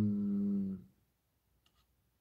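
A man's drawn-out, closed-mouth "mmm" of thinking, sliding slightly down in pitch and trailing off just under a second in; near silence follows.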